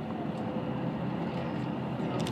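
Steady engine and road noise heard inside the cabin of a moving motorcoach.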